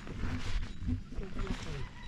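Brief speech in a local language, a few low-pitched phrases, over a low rumble.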